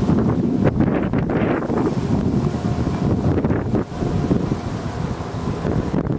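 Wind buffeting the camera's microphone: a loud, rough noise that swells and drops unevenly.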